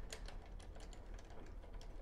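Faint, irregular light clicks of the brake caliper's two mounting bolts being picked up and handled by hand, several clicks a second.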